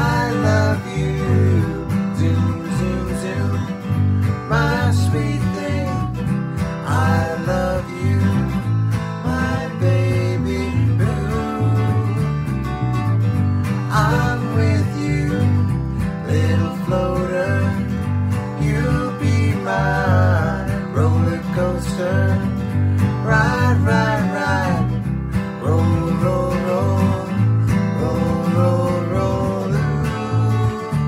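Two guitars, a Gibson flat-top acoustic and an archtop, strummed together in a steady rhythm, with two voices singing over them.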